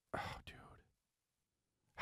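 A brief breathy puff of voice close to a studio microphone, ending in a faint click about half a second in.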